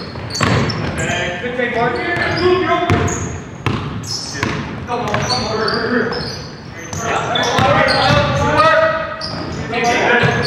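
Basketball game on a hardwood gym floor: the ball bouncing repeatedly, with players' indistinct shouts and calls. It all echoes in a large hall.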